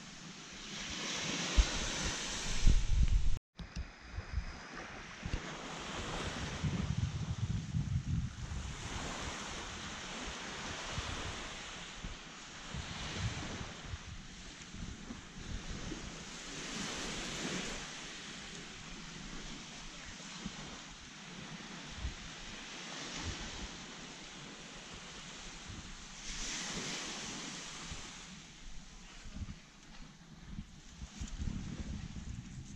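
Small waves washing onto a sandy beach, swelling and easing every few seconds, with wind buffeting the microphone. A strong gust of wind noise in the first few seconds ends as the sound cuts out for an instant.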